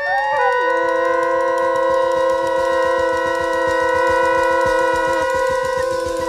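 Free-improvised jazz from a quintet of bass clarinet, flugelhorn, trombone, voice and drums: several long tones held together at different pitches, a lower one sliding down into place about half a second in, over a fast, light drum patter.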